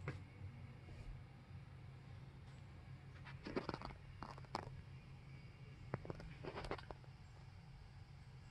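Faint rustling and a few light knocks from camera handling against car upholstery, over a steady low hum.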